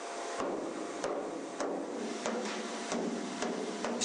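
Hand mallet beating a copper brewing-vessel dome: about seven sharp strikes at a steady pace, roughly one every 0.6 s, over a steady background hiss.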